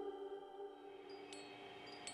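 Fading tail of soft ambient background music, its held notes dying away, with a few faint high chime-like tinkles about a second in and again near the end.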